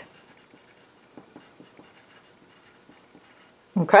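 Graphite pencil writing on a paper worksheet: faint, irregular scratching strokes as a word is written out.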